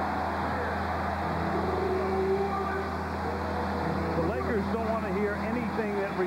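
Basketball arena crowd noise with a low, steady hum: the recorded gong sound effect played over the arena speakers, heard through the TV broadcast. A man's voice comes in after about four seconds.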